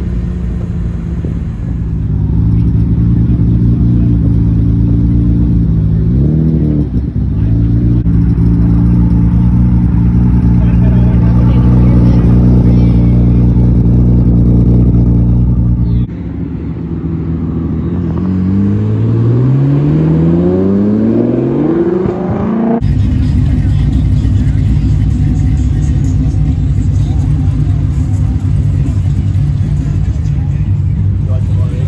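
Big-turbo RB26 straight-six idling steadily through its exhaust, with one short blip of the throttle about a quarter of the way in. After a cut, another car's exhaust revs up in a smooth rising sweep. After a second cut, a steady idle follows from what appears to be the LS1 V8 of a swapped Porsche 944.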